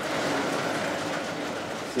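Sliding chalkboard panels being moved along their tracks: one steady run of rolling, scraping noise lasting about two seconds.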